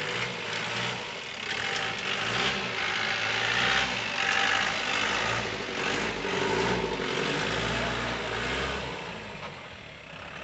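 Off-road jeep's engine revving in repeated surges as it climbs out of a steep, muddy bank, then fading as the jeep pulls away up the track near the end.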